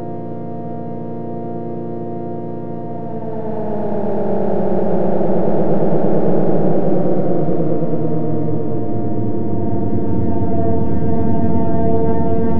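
Electronic drone from the DIN Is Noise software synthesizer: a chord of many steady held tones that swells about three or four seconds in into a louder, wavering cluster, then settles back into sustained tones.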